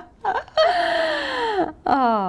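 A person's drawn-out vocal cry without words, sliding down in pitch for about a second, followed near the end by a shorter, lower falling groan, the kind of mock whine or laugh that answers a joke.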